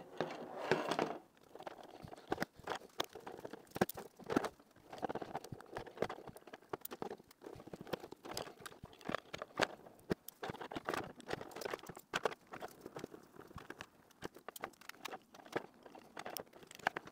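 A precision screwdriver turning out small screws from the plastic battery housing of a Kiwi Design K4 Boost headset strap, with many small irregular clicks and ticks as the bit and screws knock against the plastic.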